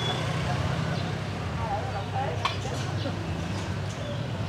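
Steady low rumble of street traffic, with faint voices in the background and a small click about two and a half seconds in.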